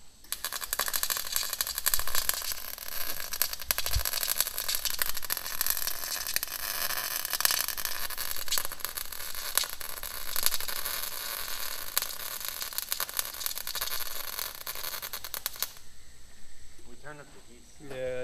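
Wire-feed welder's arc crackling like frying bacon for about fifteen seconds, then cutting off, while welding a painted steel shopping-cart frame. The arc is struggling to burn through the paint on the steel.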